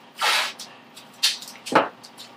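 Blue painter's masking tape being pulled off the roll: three short rasping rips, the first the loudest.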